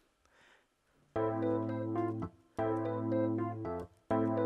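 A software keyboard chord over a low root note, played back from an FL Studio piano roll. It starts a little over a second in and is held for about a second, breaks off briefly, then repeats, looping, with the next repeat starting just at the end.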